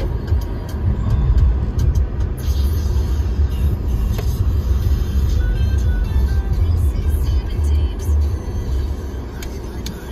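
Car in motion heard from inside the cabin: a steady low rumble of engine and road noise.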